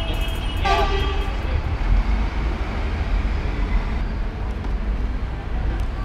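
Steady low rumble of outdoor city background noise, with a short vocal sound about a second in.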